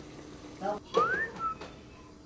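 A person whistling: one quick rising whistle about a second in, followed by a short held note, just after a brief vocal sound.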